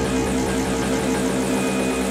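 Psytrance DJ set music: held synth tones over a dense, steady wash of sound, with no kick drum beat.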